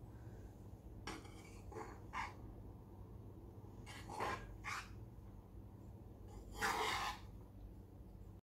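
A metal spoon scraping through cooked lemon rice against the sides of a nonstick pan as it is mixed: a handful of short scrapes, the longest and loudest about seven seconds in, over a faint steady low hum.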